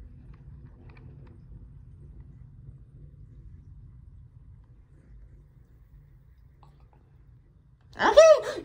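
Faint sound of the last shallow water draining from a bathroom sink, with a low steady rumble and a few soft ticks, the loudest near the start.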